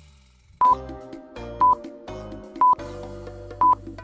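Countdown timer sound effect: a short high electronic beep about once a second, four in all, over soft background music with held notes.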